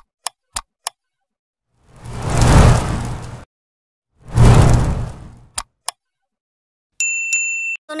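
Edited intro sound effects: a few quick ticks, two long swelling rushes of noise, two more ticks, then a single steady high-pitched beep just before the end.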